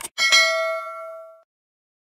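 A short click followed by a single bright bell ding that rings for about a second and fades: a notification-bell sound effect for a subscribe-button animation.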